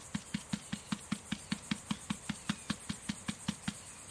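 Small plastic cup of freshly poured silicone in an alginate mold being tapped rapidly against a mat-covered surface, about five soft knocks a second, to bring air bubbles up out of the silicone.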